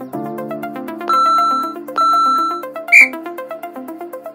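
Interval timer counting down over electronic background music: two long, steady beeps a second apart, then a shorter, higher and louder beep about three seconds in that marks the end of the interval.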